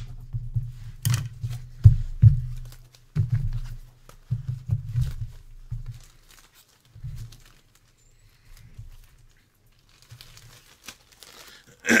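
Desk handling noise: irregular dull knocks and clicks over the first half, then softer crinkling of a plastic bag as a trading card in its holder is bagged.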